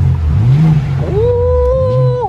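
2021 BMW M4 Competition's twin-turbo straight-six, set to sport mode, revved once: the engine note climbs, then falls back. Over the second half a long high 'ohh' is held, gliding up at its start and down as it ends.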